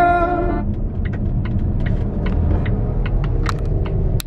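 Car interior noise: a steady low rumble of the car running, with scattered light clicks and taps throughout. A brief pitched tone opens the first half second.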